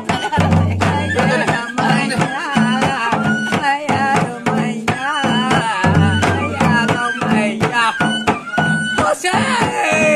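Folk dance music: a laced barrel drum beaten in a quick, steady rhythm, with voices singing over it. Deep drum booms sound twice, about half a second in and again about six seconds in.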